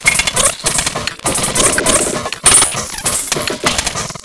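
Breakcore track: a dense, fast rattle of chopped, glitchy percussion hits and noise, with no steady melody.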